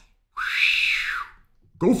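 A man voicing a breathy whoosh, imitating a fireball: one sound about a second long that rises and then falls in pitch.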